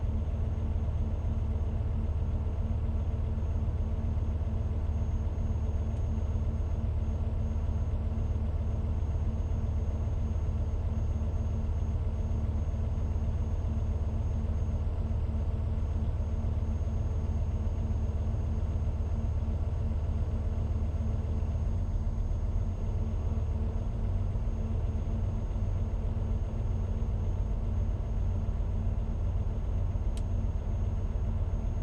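Heavy truck's diesel engine idling steadily while its air compressor charges the brake reservoirs toward cut-out pressure.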